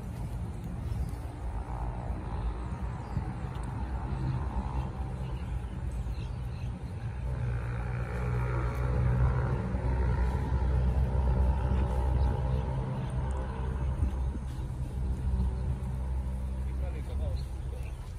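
A motor vehicle's engine running steadily, a low rumble with a hum, growing louder about seven seconds in and easing off after about thirteen seconds.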